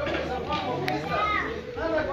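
A crowd of many people talking at once, with children's voices among them, and a brief sharp click about a second in.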